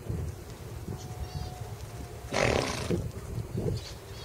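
A horse blowing a single short snort through its nostrils, a breathy burst of about two-thirds of a second a little past the middle, over low wind rumble on the microphone.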